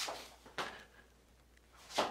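A few faint, sharp clicks as a hex key and small screw are worked into the spring of a metal 3D-printer extruder arm: one at the start, one about half a second in and one at the end, with quiet room tone between.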